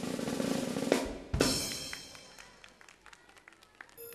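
Drum roll that ends in a hit and a loud cymbal crash about a second and a half in, the crash ringing out and fading: a circus-style fanfare announcing an act's entrance.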